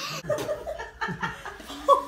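A young boy laughing in short, broken bursts, with a brief rising squeal near the end.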